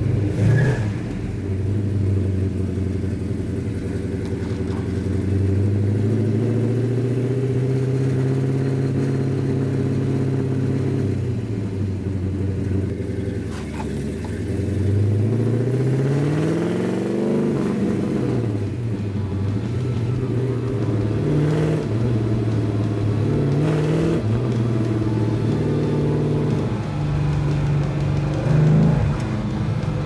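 1967 Plymouth GTX's 426 Hemi V8 with dual four-barrel carburettors under way and accelerating. The engine note holds steady, dips, climbs sharply and drops again at gear changes through the manual gearbox, then rises and falls a few more times.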